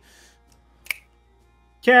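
A single short, sharp click about a second in, amid quiet; a man's voice says "okay" right at the end.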